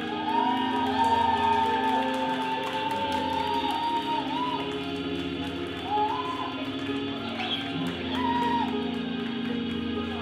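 Live rock band playing: a sustained lead melody that bends in pitch, over held chords and light cymbal ticks.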